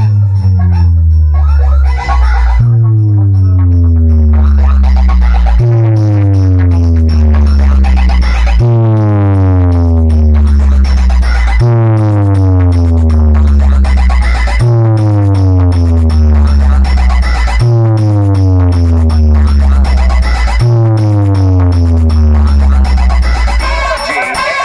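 A large DJ speaker box stack playing electronic music at high volume: a deep bass tone steps down in pitch and restarts about every three seconds.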